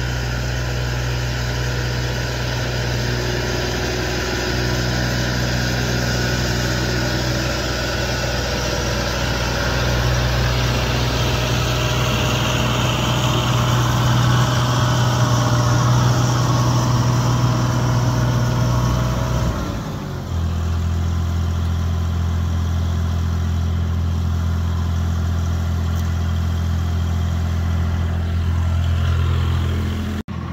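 Vermeer mini-skidsteer's engine running steadily at a high speed, then dropping to a lower, steady pitch about twenty seconds in.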